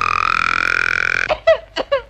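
Cartoon sound effect on an animated film's soundtrack: one loud, steady, buzzy blast held for about a second and a half, then a few short squeaky cries.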